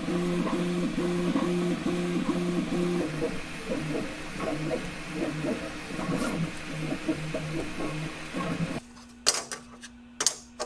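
Prusa i3 MK3S 3D printer printing PLA, its stepper motors whining in changing pitches. For the first few seconds the tones switch back and forth in a regular pattern, about two or three times a second, then turn more varied. Near the end the motor sound stops and a few sharp clicks follow.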